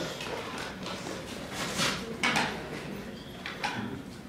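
Lecture hall room noise with a few soft knocks and rustles, about two seconds in and again near the end.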